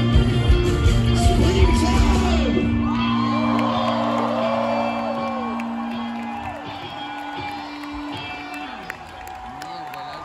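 A live rock band ends a song. The drums and bass stop about three seconds in, leaving a held chord ringing and fading out, while a large festival crowd cheers and whoops.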